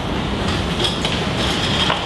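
Handheld microphone handling noise: a steady rumble of rubbing and scraping with a few small knocks as the mic is put down and the table mics are moved.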